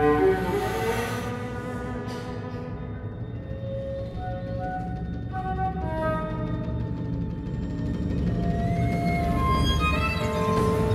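Contemporary chamber ensemble of flute, clarinets, violin, cello, percussion and piano playing. Held notes at shifting pitches sound over a dense low rumble, with a brief noisy swell at the start.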